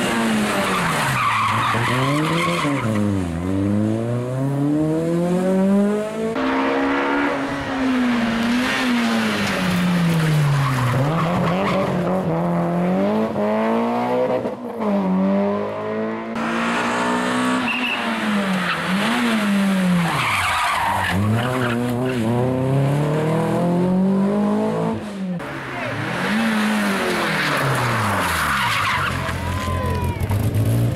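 Rally cars driven hard through a tight tarmac hairpin, one after another: engines rev up and drop back repeatedly through the gear changes and braking, with tyre squeal and skidding.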